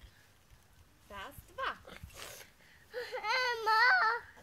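A toddler's high-pitched voice: a short call about a second in, then a longer, wavering, sing-song vocalization near the end, with no clear words.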